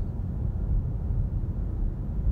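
Steady low rumble of tyre and road noise inside the cabin of a Tesla Model S 85D electric car cruising at about 60 mph.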